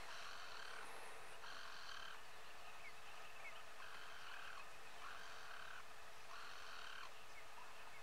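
Faint buzzing animal calls repeated one after another, each lasting well under a second and coming roughly once every second, over a steady faint hum.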